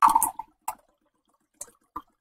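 Filtered water poured from a pitcher into a glass, heard as a few brief splashes: a longer one at the start, a short one under a second in and faint ones near the end.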